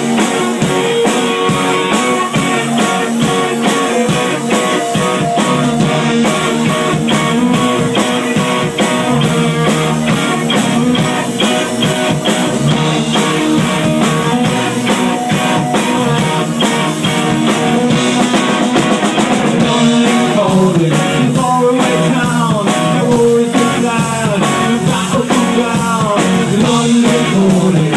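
Live rock band playing loud: electric guitars over a steady drum-kit beat, with a voice singing in places.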